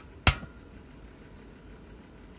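Portable gas camping stove's piezo igniter snapping once as its control knob is turned to ignite, a single sharp click about a quarter of a second in.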